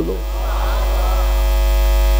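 Loud, steady electrical mains hum from the sound system, growing a little louder. Faint voices of a crowd answer the call to respond in the first second or so.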